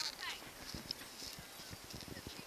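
Boxer dog tearing at a stuffed toy: irregular soft knocks and snuffling, with a few short high squeaks.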